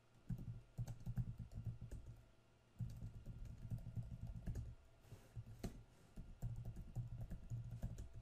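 Computer keyboard typing in quick runs of keystrokes, broken by short pauses.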